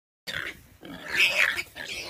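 Warthog squealing in distress in repeated harsh cries while pinned by a leopard; the loudest cries come just past the middle.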